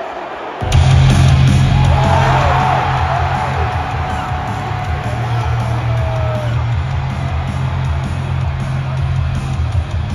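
A wrestler's hard-rock entrance theme hits suddenly over the arena PA about a second in and keeps playing loud with heavy bass, while the arena crowd cheers and screams over it.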